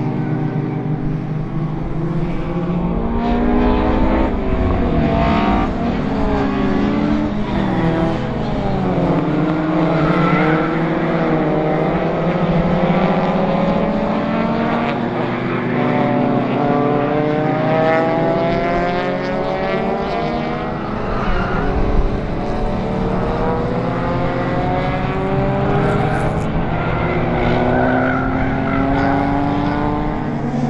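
Several production-based circuit race cars running in a close pack, their engines revving up and down at once through gear changes and corners, with pitches rising and falling over one another as they pass.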